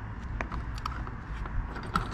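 A few light clicks and taps from a steel swivel caster being turned by hand on a plastic cart, as its swivel clearance against the cart body is checked, over a steady low hum.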